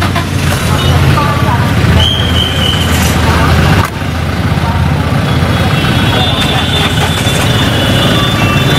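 Street traffic noise: a steady rumble of vehicle engines with indistinct voices, and a short high-pitched tone about two seconds in.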